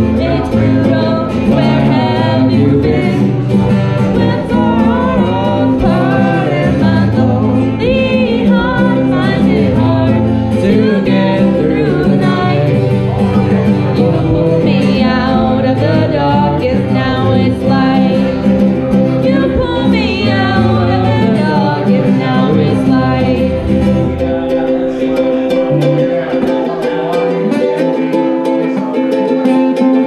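Live acoustic duo playing a song: singing over a strummed ukulele and acoustic guitar. The deep low notes drop out about 24 seconds in.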